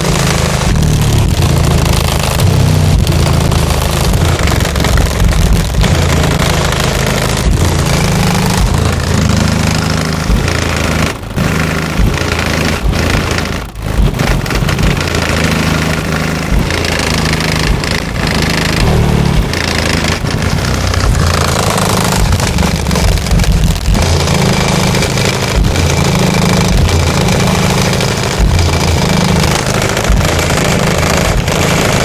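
SoundQubed HDC3 18-inch subwoofers playing loud, deep pulsing bass music in a truck, heard from outside at the back hatch as it flexes, with a harsh rattling buzz on top. The bass briefly drops twice around the middle.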